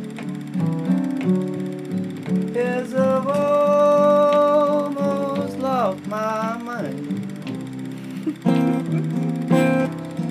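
Acoustic blues played on acoustic guitar. A long held melody note rings out in the middle and slides down at its end, over steady low plucked notes.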